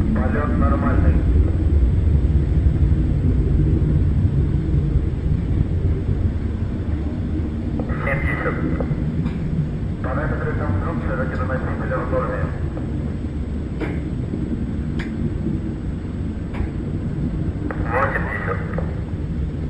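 Soyuz-2.1a rocket engines during ascent: a deep, steady rumble that slowly fades as the rocket climbs away. Voices are briefly heard over it a few times.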